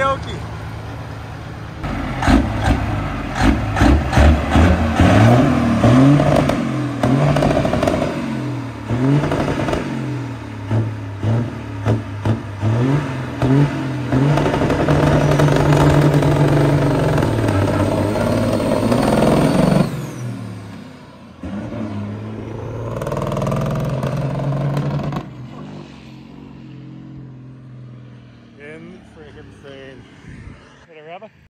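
High-horsepower diesel semi truck accelerating hard under load, its engine revving up and dropping back several times as it shifts up through the gears, then holding at high revs. The sound cuts off suddenly about two-thirds of the way through, leaving a quieter engine that fades.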